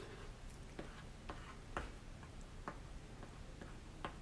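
Plastic stylus ticking faintly against an LCD writing tablet as words are written on it: a few irregular clicks, roughly half a second to a second apart.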